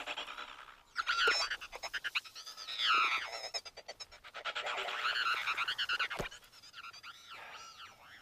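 Forest wildlife ambience: chirping, whistling calls that rise and fall in pitch, coming every second or two, with runs of rapid clicking trills between them.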